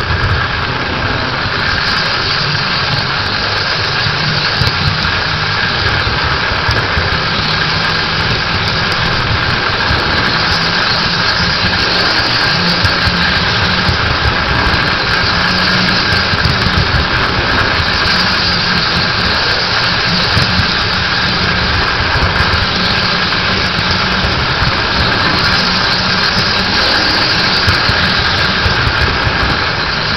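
Electric model train running on three-rail tubular track, heard from a camera car riding the rails: a loud, steady rumble of wheels on the rails with a steady high motor whine.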